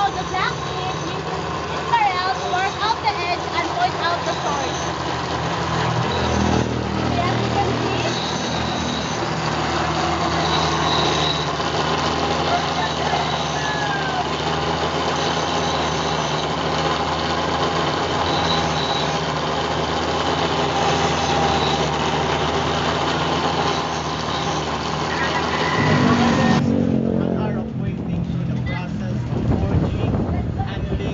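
Motor of a small grinding machine running steadily with a low hum, as a knife blade is worked against its wheel. It starts a few seconds in, and the sound changes abruptly near the end.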